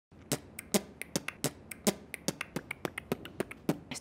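A percussive beat of sharp clicks and snaps at about five a second, some with a low thud under them, like a beatboxed or finger-snap rhythm track.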